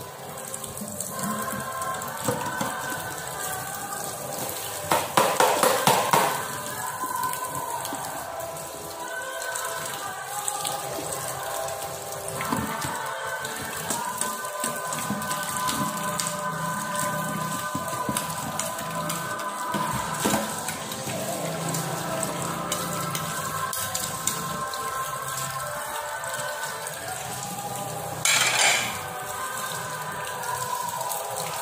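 Kitchen tap running into a stainless-steel sink as a plate is scrubbed and rinsed, with a quick run of dish clatter about five seconds in and a brief louder rush of water near the end. Background music plays under it.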